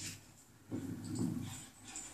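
A dog's low vocal sound, lasting about a second and starting a little under a second in.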